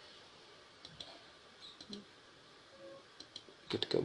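A few faint, scattered clicks of a computer mouse over quiet room noise.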